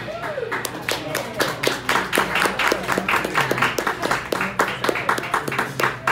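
Applause from a small audience: many irregular hand claps begin about half a second in, just after the band's last note, with a few voices mixed in.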